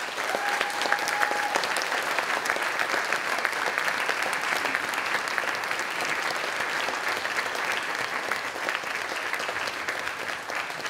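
Theatre audience applauding: dense, steady clapping that starts suddenly and eases slightly toward the end. A brief steady high tone sounds over it near the start.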